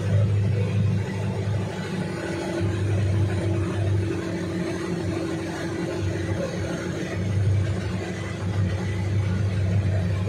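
A motor engine running steadily at an even pitch as the vehicle moves through floodwater, pushing a wake.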